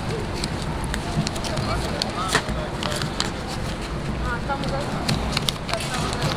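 Street-stall ambience: background voices and a steady low rumble, with scattered light crackles and rustles as a sheet of paper is handled at the grilled-corn cart.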